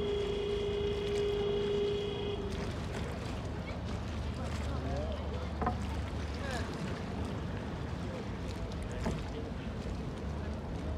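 Grand Canal water ambience: water lapping and sloshing as a gondola is rowed past close by, under a low boat-engine rumble and distant voices. A steady high tone sounds until about two seconds in and then stops.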